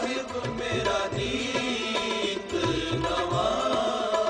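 Sikh kirtan in Rag Dhanasari: a chanted melodic line over sustained accompaniment, with repeated tabla strokes underneath.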